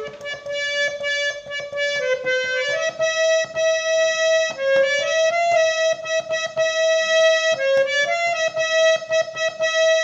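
Harmonium playing a melody one note at a time, with long held reedy notes that step up and down a few times.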